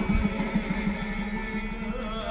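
Live Armenian folk music from an orchestra of folk instruments: rapid drum strokes under held melody notes.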